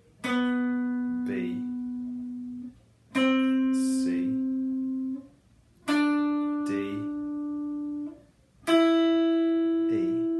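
Les Paul Standard electric guitar playing single notes up the C Lydian scale: four notes, each plucked once and left ringing for about two seconds, each a step higher than the last. A voice names the notes in the gaps.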